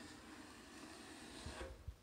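Wide drywall taping knife drawn along the wall over wet joint compound, scraping excess mud off a corner: a faint steady scraping hiss that stops about a second and a half in, followed by a couple of soft low knocks.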